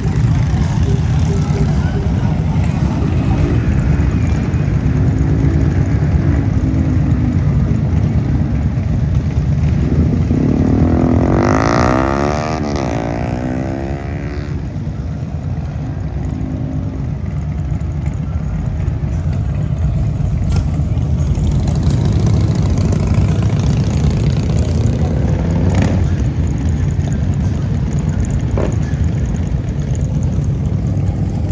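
Motorcycle engines running in a steady low rumble, with one engine note rising and falling near the middle.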